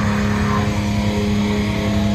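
Live heavy metal band playing loud: a long held distorted guitar note rings over dense, rapid drumming and bass.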